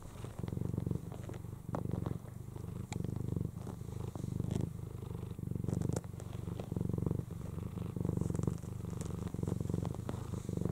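Snow Lynx Bengal mother cat purring steadily in even, repeating pulses as her newborn kittens nurse.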